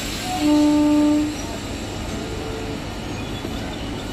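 Electric local train's horn sounding one blast about a second long, the loudest sound here, over the steady running noise of the train's coaches moving slowly along the platform.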